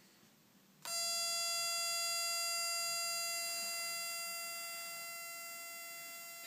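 A Denso Slim HID xenon ballast and a cheap eBay ballast switching on together about a second in. They give a sudden, steady, high-pitched electronic whine made of several pitches at once, which slowly fades as the 4300K xenon bulbs warm up.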